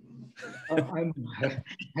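Speech: a man hesitating with a drawn-out "uh" before starting his reply, heard over a video call.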